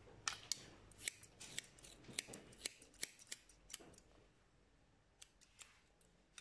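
Hairdressing scissors snipping through a section of long hair held between the fingers: a quick, irregular run of crisp snips over the first four seconds, then a few fainter snips near the end.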